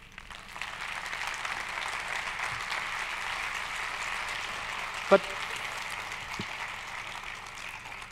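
Audience applauding steadily, easing off slightly near the end. A short word is spoken over it about five seconds in.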